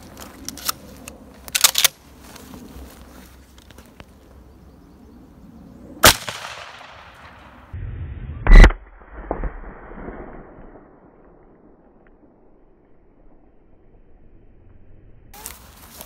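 12-gauge shotgun firing birdshot: two sharp blasts about two and a half seconds apart, the second the louder, each trailing off in an echo. A few light clicks come in the first two seconds.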